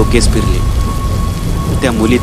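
Thunderstorm: steady heavy rain with a continuous low rumble of thunder.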